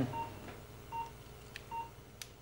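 Operating-theatre patient monitor beeping: three short beeps of the same pitch, a little under a second apart. This is the pulse tone sounding with each heartbeat.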